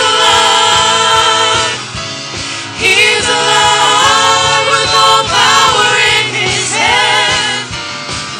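Church worship team of women and men singing a gospel song together in harmony, backed by a live band with keyboard, guitar and drums. The voices hold long, wavering notes over a steady beat, swelling louder about three seconds in.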